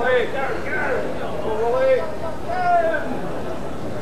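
Speech: voices talking, the words not made out.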